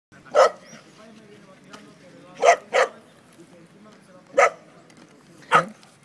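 A dog barking in play: five short, sharp barks, two of them in quick succession in the middle.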